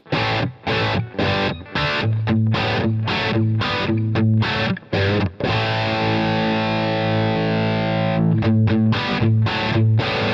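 Electric guitar through an Egnater Boutikit 20-watt 6V6 tube amp head with the gain maxed: heavily distorted, short chopped chords in a quick rhythm, a chord left ringing for a couple of seconds past the middle, then more short chords. The low end is big and boomy; partway through, the amp's tight switch is thrown to tighten it up.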